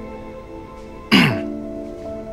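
Soft background music of sustained, held chords. About a second in, a man briefly clears his throat.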